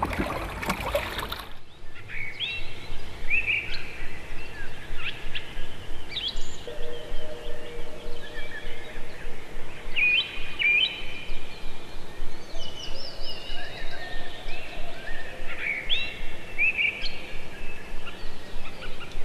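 Birds chirping and calling, many short rising chirps repeating over a steady outdoor background hiss. A brief rushing noise opens the first second or so.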